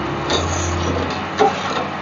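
Metal slotted spoon stirring sugar and water in a stainless steel pot, scraping and clinking against the metal as the sugar dissolves into a syrup, with one sharper knock about a second and a half in.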